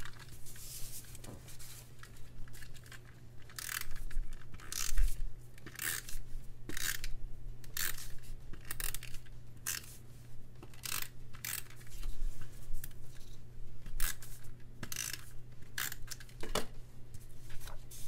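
Tombow adhesive tape runner drawn across paper again and again, laying down strips of glue: a string of short scraping strokes, about one or two a second, over a steady low hum.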